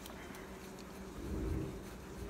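A fish fillet being tossed in a bowl of fish-fry coating, the bowl shaken with a soft low rumble about a second and a half in, over a steady low hum.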